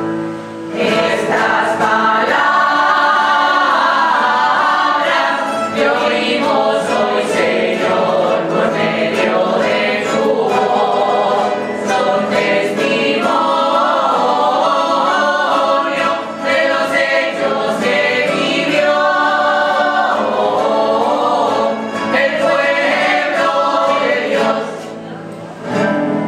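A small mixed choir of men and women singing a sung part of the Mass together, in long phrases separated by brief pauses.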